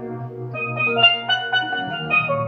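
Steelpan melody of struck, ringing notes over an electronic keyboard holding sustained chords and bass underneath.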